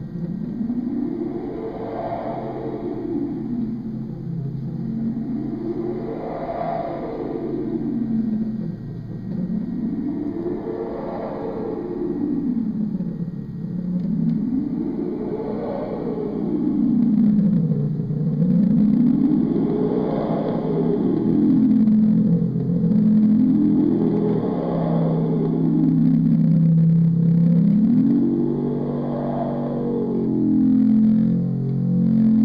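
Korg Monotribe analog synthesizer drone whose pitch sweeps slowly up and down, about once every four to five seconds, over a steady low tone. It gets louder about halfway through.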